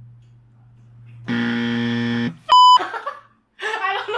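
A game-show style wrong-answer buzzer sounds steadily for about a second, a little over a second in. It is followed by a short, very loud high electronic beep and then brief voices and laughter.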